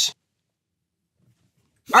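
Near silence between two bits of speech: a man's voice cuts off just after the start, and a man's voice starts again with "All right" near the end.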